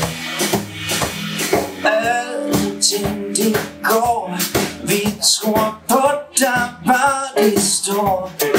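Live blues trio playing: electric guitar lines over bass guitar and a Ludwig drum kit keeping a steady beat.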